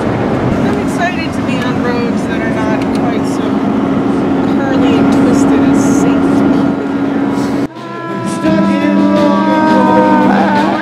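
Road noise inside a moving RV, with faint voices in the background. A little before the end the sound cuts suddenly to music with held notes.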